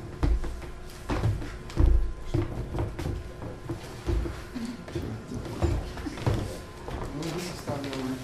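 Footsteps and knocks close by, a series of dull thumps and clicks as a person walks past, with quiet voices murmuring near the end.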